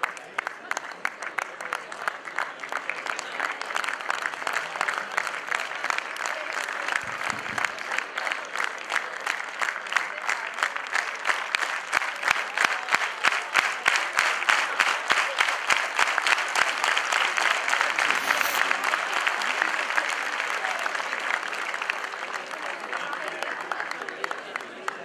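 Audience applauding steadily, building to its loudest in the middle and easing off toward the end.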